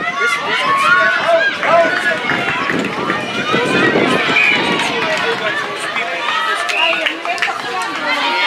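Many high-pitched female voices calling and shouting over one another, players and spectators at a netball match, with a few short sharp knocks among them.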